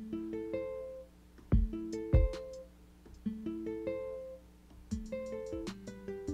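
A beat sequenced on a Roland MV-1 Verselab groovebox playing back. Short plucked notes step upward in a short run that repeats about every one and a half seconds, with high ticks over it and two heavy kick-drum hits in the second and third seconds.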